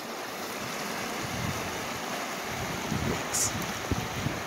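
River water rushing and churning over rocks at the bank, a steady wash, with wind buffeting the microphone in low gusts from about a second in.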